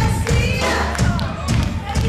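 Live rock band playing at concert volume: heavy drums thumping about twice a second, with electric guitar and a voice over them.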